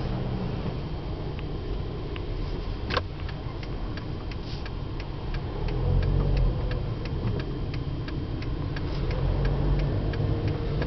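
A car's turn-signal indicator ticking steadily, about three clicks a second, over the low hum of the car's cabin as it creeps along in traffic. A single sharper click comes about three seconds in.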